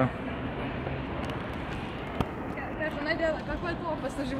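Steady outdoor urban background noise with faint, distant voices in the second half and a single sharp click about two seconds in.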